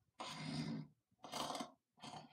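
Two faint, breathy snores voiced by a person, about a second apart.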